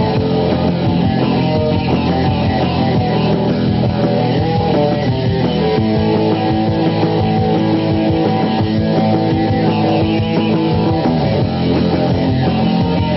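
Loud rock music played by a band, led by electric guitar.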